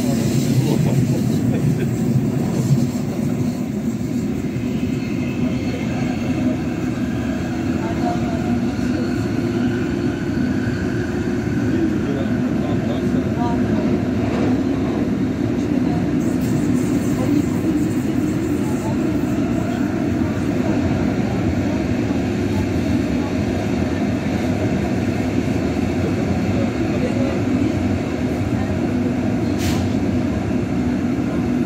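Siemens B80 light-rail car running along its track, heard from inside the passenger cabin: a steady rumble of wheels on rail with a faint motor whine over it.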